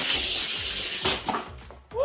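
Two die-cast Hot Wheels cars running down an orange plastic track, a steady rushing whir of small wheels on the track, with a single sharp clack about a second in.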